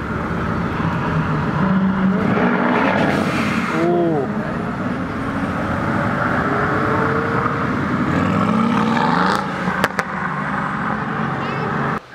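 Mercedes-AMG GT's twin-turbo V8 running as it rolls slowly past in street traffic. Its engine note rises as it accelerates about eight seconds in, with voices around it.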